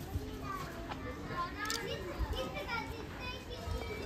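Faint, overlapping chatter of shoppers, including children's voices.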